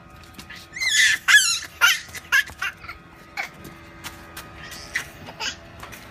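A young child's high-pitched squeals and laughter: several short wavering calls in the first two seconds, then fainter scattered clicks and knocks.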